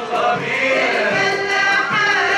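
Choir singing an Egyptian song together with an Arabic music ensemble.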